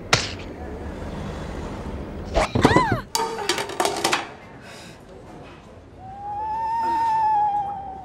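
Comic sound effects of a swap: a sharp knock, then a quick rise-and-fall glide and a few knocks around the third second. Near the end comes a long, high, slightly arching held note.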